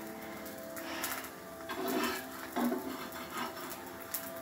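Egg dosa cooking on a hot cast-iron tawa, with a faint, steady sizzle.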